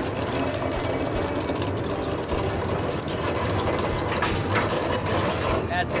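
Oyster boat's engine and dredge winch running steadily as the oyster dredge is hauled up from the reef: a low, even engine hum under busy mechanical noise.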